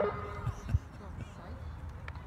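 A short laugh, with a sharp thump just after it, then an uneven low rumble with faint irregular thuds.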